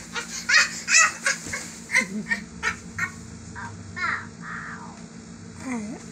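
A toddler squealing and laughing in short, high-pitched calls that bend up and down, with one long falling squeal near the end.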